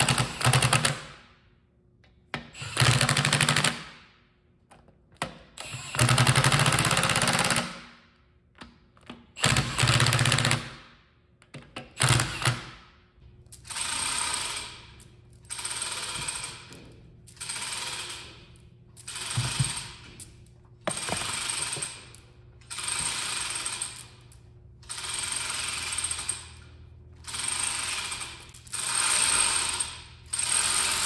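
Cordless impact wrench hammering in five bursts as it drives two 1/2-13 forcing bolts to push the torque converter case up off the converter. From about halfway, a hoist lifting the freed case runs in a steady series of short pulls, about one every second and a half.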